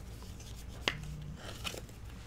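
Baseball card handled and slipped into a rigid plastic card holder: light plastic clicks and rustles, the sharpest click about a second in and a softer one near the end.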